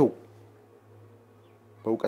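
A steady low hum in the pause between a man's words, with his speech trailing off just after the start and resuming near the end.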